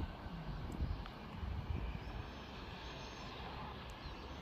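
Steady low rumble of distant engine noise, with a little wind on the microphone.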